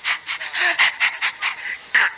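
A man's voice making short, breathy, unworded sounds into a microphone in quick succession, about seven a second.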